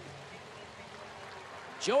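Steady, low murmur of a ballpark crowd in a broadcast, with no distinct cheers or impacts.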